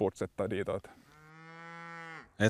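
A cow mooing: one long, level-pitched call of about a second that starts halfway through and grows louder.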